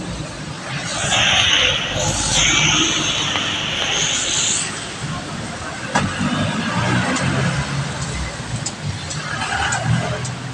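Street traffic on a flooded road: a loud hissing rush for about four seconds, then motor vehicle engines running low, with voices in the background.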